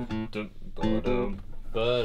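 A classical guitar being played, plucked notes in short phrases, with a man's voice over it.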